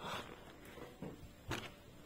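Faint handling noise as a hand reaches over nail polish bottles in their box, with a short rustle at the start and a sharp tap about one and a half seconds in.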